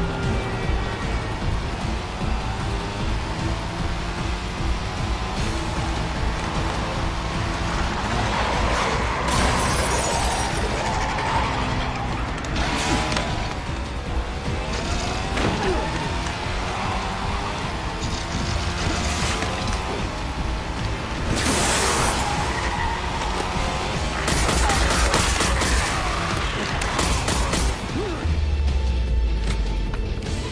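Action-film soundtrack: dramatic music mixed with a motorcycle engine and several sudden crash and impact effects through the middle.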